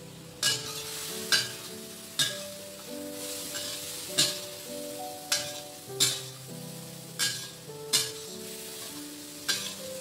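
Metal spatula scraping and knocking against a stainless steel wok roughly once a second while shrimp in sauce sizzle and fry in the pan. Background piano music plays over it.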